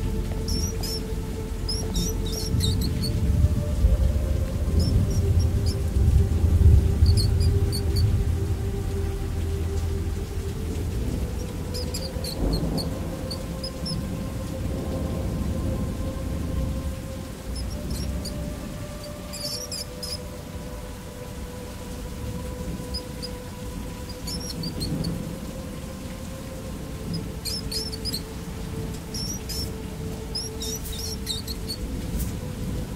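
Layered ambience: a low rumble of distant thunder with rain, strongest in the first third, under soft sustained background music. Short clusters of high-pitched mouse squeaks recur every few seconds.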